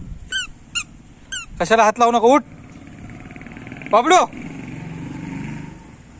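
Three short, high squeaks about half a second apart, from a toddler's squeaker shoes as the child steps.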